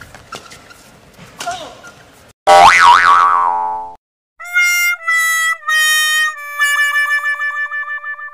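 Comedy sound effects: a loud cartoon boing with a zigzagging, wobbling pitch about two and a half seconds in. After a short gap comes a sad-trombone 'wah wah wah waah' of four notes stepping down, the last one long and wavering, the stock sign of a blunder. Before them, faint hall ambience with a few sharp clicks.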